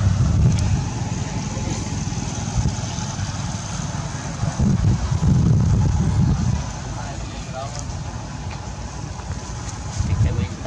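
Low rumbling wind and handling noise on a hand-held camera's microphone while it is carried at a walk, louder about halfway through, with a faint brief pitched call near the end.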